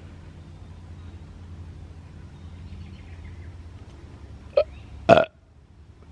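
Two short vocal sounds from a person, about half a second apart, the second one louder and close by, over a steady low hum.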